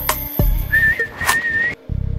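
A single held whistle note, about a second long, in the middle of a hip-hop beat with deep bass hits.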